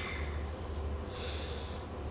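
A person breathing into a close microphone in a pause between phrases: a short breath at the start and a longer, hissy breath about a second in, over a steady low hum.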